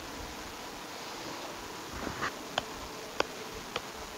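A soccer ball being juggled: a regular series of light touches on the ball, about two a second, starting about halfway in, over a faint steady buzz.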